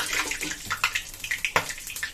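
Whole spices (cumin seeds, dried red chillies, bay leaf and asafoetida) sizzling in hot mustard oil: a steady hiss broken by many sharp crackles and pops as the cumin begins to splutter.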